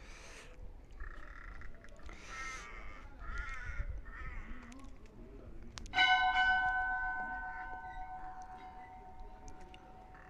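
Crows cawing in short calls, then about six seconds in a bell is struck once and rings with several steady tones, fading slowly.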